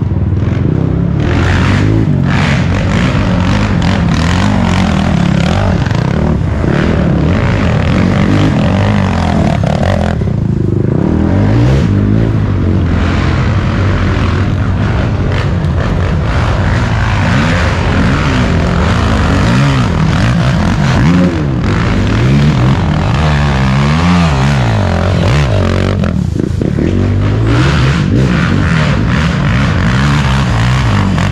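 Racing ATV engines revving up and down again and again under load as the quads climb a steep dirt hill, loud throughout.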